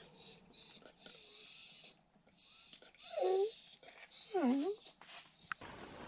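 A dog whining for attention: a string of thin, high-pitched whines, some held for nearly a second, with two lower whimpers that dip and rise in pitch about three and four and a half seconds in. A rustling hiss starts near the end.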